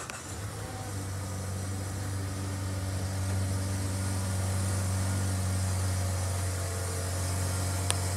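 Steady low mechanical hum with a faint even hiss, holding at the same level throughout.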